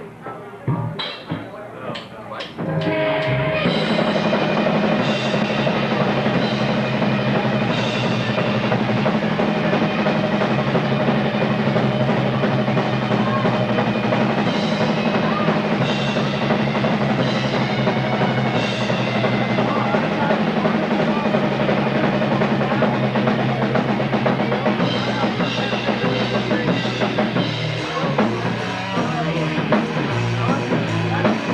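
A live rock band starts a Texas blues number: a few sharp hits, then about three seconds in the full band comes in with electric guitar, bass and drums playing steadily, with cymbal crashes.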